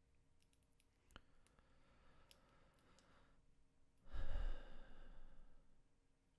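A person's long sigh, breathed out into a close microphone about four seconds in, after a few faint clicks.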